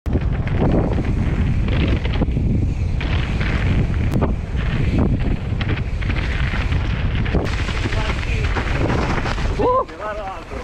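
Mountain bike riding down a dirt trail, heard from a bike- or rider-mounted action camera: steady wind buffeting the microphone, tyre rumble and the rattle and knocks of the bike over rough ground. A short pitched squeal sounds near the end.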